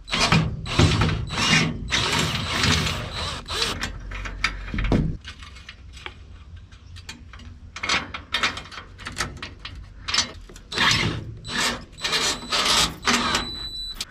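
Cordless drill-driver loosening the bolt of a solar panel's aluminium end clamp, so that a grounding washer can go under the panel frame: a dense run of rapid clicks over the first few seconds. Later come scattered metallic clicks and clinks as the clamp is handled.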